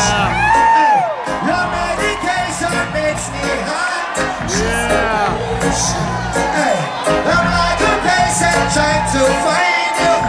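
Live reggae band playing through a large outdoor PA, with a steady bass line and a voice singing in long gliding phrases, heard from far back in the audience with whoops from the crowd.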